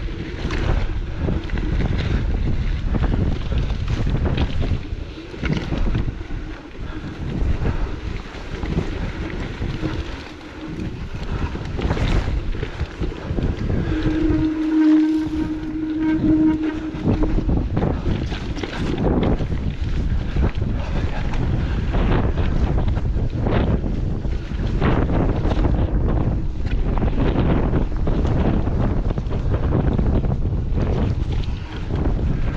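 Wind buffeting the microphone over the rattle and knocks of a mountain bike riding down a rough, rocky trail, with a steady tone lasting a few seconds about halfway through.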